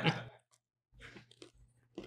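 A man chewing a mouthful of food close to the microphone: faint, soft crunching clicks start about a second in, after the tail of a laugh.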